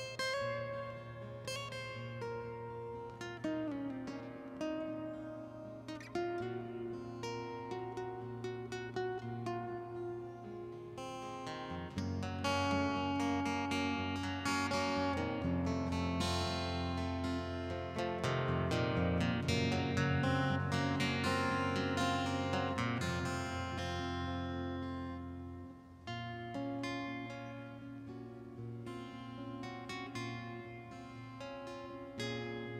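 Acoustic guitar music with picked notes. About twelve seconds in it grows louder and fuller with a deep low part underneath. Near the end it drops back to a quieter passage.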